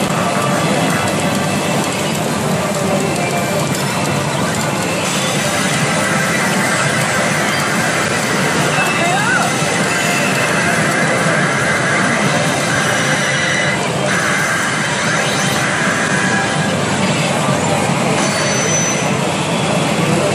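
CR Ikkitousen SS2 pachinko machine playing a reach sequence: music, an anime character's voice lines and sound effects, over a loud, steady wall of noise with no pauses.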